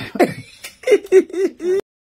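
A woman's short vocal sounds without clear words: a brief throaty onset, then a quick run of four short voiced syllables. The sound cuts off abruptly shortly before the end.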